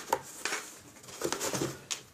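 Cardboard handled by hand as a cardboard roof is pressed onto a cardboard box house: a sharp tap just after the start, then soft rustling and a few light knocks.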